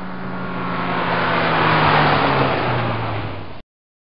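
Car drive-by sound effect: an engine hum that swells to its loudest about halfway through while its pitch slowly falls, then cuts off abruptly near the end.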